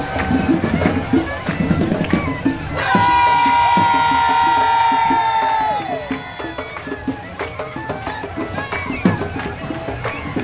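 Carnival parade music with drums over a cheering crowd. A little under three seconds in, a single long high note is held for almost three seconds and then falls away.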